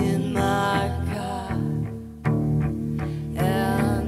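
Live music: cello with keyboard accompaniment and women singing. There are two sung phrases, one at the start and one near the end, with held instrumental notes between them.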